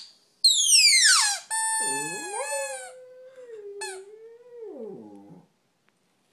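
Shih Tzu howling: a high cry that slides steeply down, then a long, held, wavering howl. A second, lower howl joins about two seconds in and sinks away just over five seconds in.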